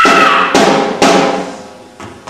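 Theatre jazz band finishing a number: a loud held final note cuts off about half a second in, followed by two drum-and-cymbal hits half a second apart that ring out and fade.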